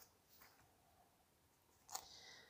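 Near silence: room tone, with a faint tick about half a second in and a short rustle of paper being handled near the end.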